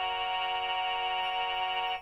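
Synthesized harmonium from an Oppo smartphone's harmonium app, with a chord of several notes held steadily through the phone's speaker. It stops abruptly near the end.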